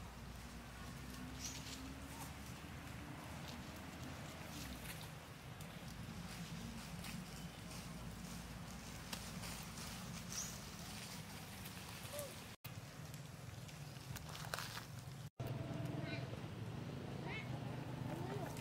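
Faint outdoor background with distant, indistinct human voices and a low steady hum, broken by occasional short high calls. The sound drops out for an instant twice in the second half and comes back slightly louder.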